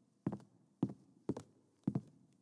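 Footsteps of a person walking at an even pace across a wooden floor, about two steps a second, four steps in all.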